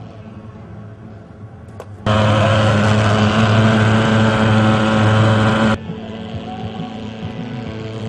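Hand-held pulse-jet thermal fogging machine running with a loud, steady buzz that cuts in sharply about two seconds in and stops sharply near six seconds. A quieter steady drone runs before and after it.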